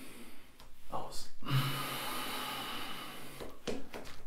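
A man breathing heavily after holding his breath in a yoga breathing exercise: a sharp breath drawn in about a second in, then a long, steady breath out that fades near the end.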